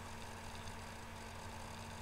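Faint steady background hiss with a low hum: room tone picked up by a webcam microphone during a pause in speech.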